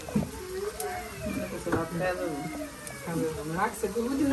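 Women's voices talking, with hot oil sizzling around battered fritters deep-frying in a pan.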